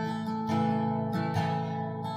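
Acoustic guitar strumming chords in an instrumental passage, with a fresh strum roughly every second and the chords ringing between strums.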